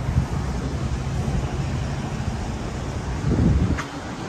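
Wind buffeting the phone microphone in a steady low rumble, over the noise of city street traffic, with a louder swell near the end.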